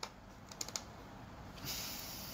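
A few quick, faint clicks of computer keyboard keys about half a second in, followed by a soft hiss near the end.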